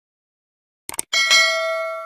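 Two quick clicks just before a second in, then a notification-bell sound effect ringing. The bell is struck again a moment later and fades slowly before it is cut off.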